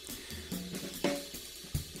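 Quiet background music: a drum-kit beat with hi-hat and cymbal.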